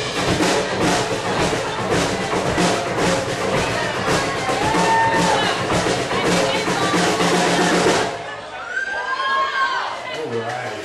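Live band with drum kit and electric guitar playing the closing bars of a country-rock song, drums hitting steadily. The music stops sharply about eight seconds in, and voices follow.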